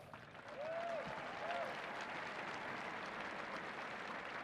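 Large outdoor crowd applauding, swelling in over the first second and then holding steady, with a few short calls from the crowd about a second in.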